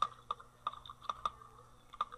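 Computer keyboard being typed on: about nine quick keystrokes at an uneven pace as a short word is entered.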